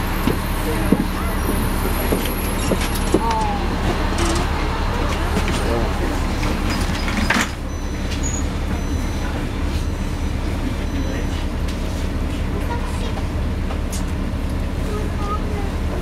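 A NABI transit bus's diesel engine idling steadily at a stop, with passengers' voices in the first few seconds. About seven seconds in there is a sharp hiss-and-thump as the front doors close, after which the street noise is shut out and only the engine hum remains.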